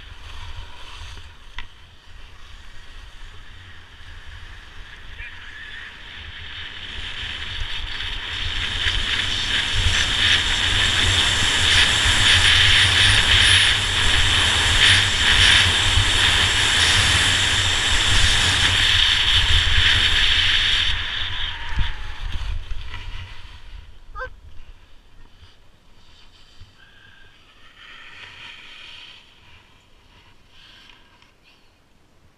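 Skis scraping over groomed snow, with wind buffeting the microphone. It grows louder from about seven seconds in as the skier picks up speed, then dies away a little after twenty seconds as the skier slows to a stop. A brief high squeak follows.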